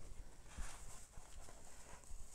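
Faint handling sounds: a paper towel rustling as it is pressed and rubbed over a small acid-cleaned die-cast metal part held in tweezers, with a few light, irregular taps.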